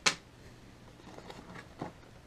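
A small plastic bag of metal mounting screws set down on a wooden table with one sharp clink, followed by faint handling noises and a soft knock near the end as the plastic doorbell receiver is lifted from its cardboard box.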